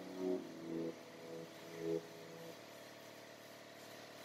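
The last few notes of background music, ending about two and a half seconds in, followed by a faint steady hum.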